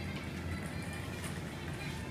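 Supermarket background sound: in-store music and indistinct voices over a steady low hum.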